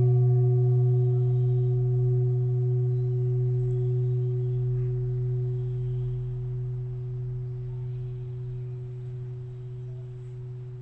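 Large singing bowl, tuned to the first Schumann frequency, ringing on with a deep low hum and a few fainter higher tones. The sound slowly dies away, the highest tone gone within a few seconds and the middle ones fading out by near the end.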